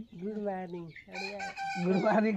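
Women's voices laughing and making drawn-out sounds: one long stretch, a short break about a second in, then shorter broken bursts.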